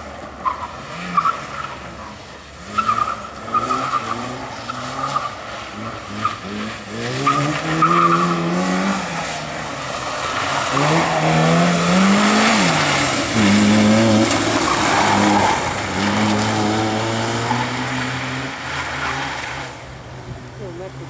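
Suzuki Swift hatchback's engine revving up and dropping back again and again as it is driven hard through a tight slalom. Short tyre squeals come in the first half, and a longer stretch of loud tyre noise follows in the middle.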